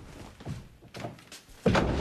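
A room door being pulled shut, closing with a single solid thunk near the end, after a few lighter knocks.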